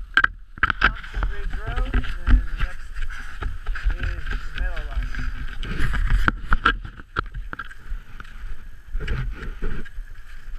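Cross-country skate skis and poles on groomed snow: repeated sharp clicks and scrapes of pole tips and ski edges, heard up close from a camera on the skier.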